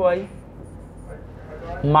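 A man's voice, the tail of one spoken phrase at the start and a new one near the end, with a pause of faint background hum and hiss between.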